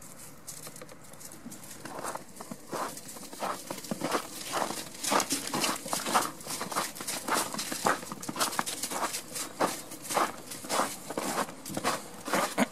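Footsteps in snow, starting about two seconds in and going on as a steady, quickening run of steps that grow louder.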